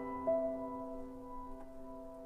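Background music: a slow, soft solo piano piece. One note is struck about a quarter second in, and the chord rings on and fades.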